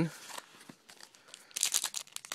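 Trading-card pack wrapper crinkling in the hands, with a quick run of crackly tearing near the end as the pack is ripped open.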